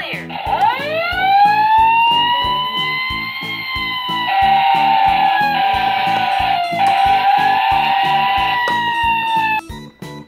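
Background music with a steady beat, with a long electronic siren wail over it that rises at the start, holds with a slowly wavering pitch and cuts off shortly before the end.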